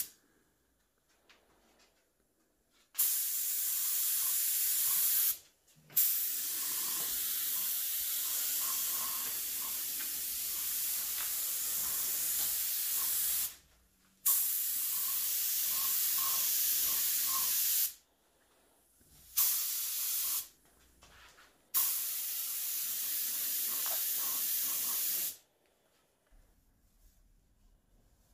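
Small LVLP (low volume, low pressure) gravity-feed paint spray gun, run at about 29–30 psi of compressed air, hissing in five trigger pulls of one to several seconds each, with short quiet pauses between them as the paint is laid on in layers.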